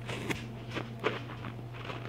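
Soft, scattered taps and rustles of movement on straw, about six in two seconds, over a steady low hum.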